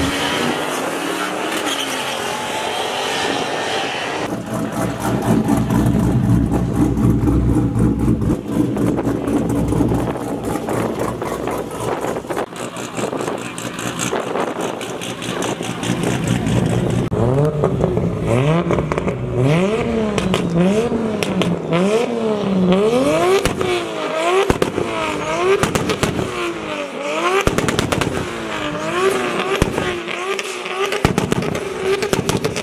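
Race-car engines at a drag meet: in the first seconds a car accelerates hard off the line, its pitch rising through the revs, then runs on steadily. From about halfway on, a car on the skid pad is revved up and down over and over, about once a second, as it drifts.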